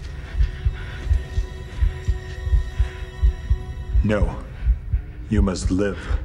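A film soundtrack with low, regular thumps about twice a second over a steady held drone. A man speaks briefly near the end.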